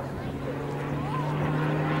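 Short Tucano T1's Garrett turboprop engine and propeller in aerobatic flight: a steady propeller drone that steps up slightly in pitch a fraction of a second in.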